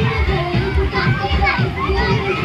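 Many children shouting and calling out at play in a water park pool, with music playing underneath.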